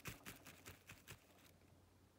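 Near silence, with a few faint light ticks and rustles in the first second or so as a small plastic toy horse figurine is turned in the hand on artificial grass, then quiet.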